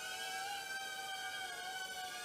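Cheerson CX-10D nano quadcopter's tiny coreless motors and propellers whining steadily in flight, the pitch wavering slightly up and down as it holds its hover.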